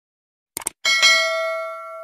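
A mouse-click sound effect, two quick clicks, then a single bell ding that rings and fades out: the notification-bell sound of an animated subscribe-button end screen.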